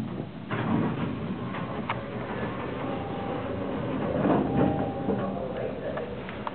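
Traction elevator car in motion: a steady rumble with a few sharp clicks and rattles, and indistinct voices around four seconds in.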